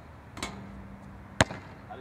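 A basketball bouncing on an outdoor court: two sharp bounces about a second apart, the second much louder, the first followed by a faint ringing hum from the ball.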